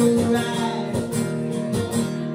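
Acoustic guitar strummed in a steady rhythm, its chords ringing on.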